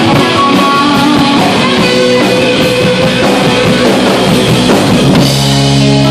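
Live rock band playing an instrumental passage: electric guitars over bass and drum kit, with a lead guitar holding long notes. About five seconds in the band hits a chord that rings on.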